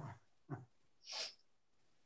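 A short breathy puff of air from a person, about a second in, during an otherwise quiet gap in a video-call conversation.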